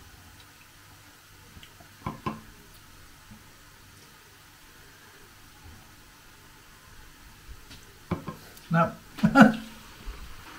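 Quiet room noise with a man sipping frothed red wine from a plastic glass: two short sip sounds about two seconds in. Near the end come a few short vocal sounds from a man.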